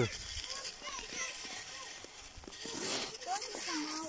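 Faint, brief voice sounds from a small child over a light outdoor hiss, with a few soft knocks.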